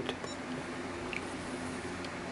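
A key pressed on a RigExpert AA-54 antenna analyzer gives a brief high beep about a quarter second in. Faint room tone follows.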